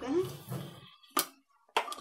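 Two short sharp clicks about half a second apart, a steel spoon knocking against a steel kadhai full of sugar and lemon pulp.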